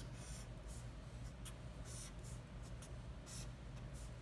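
Felt-tip marker drawn across paper in several short, faint strokes, ruling a row of lines and multiplication signs.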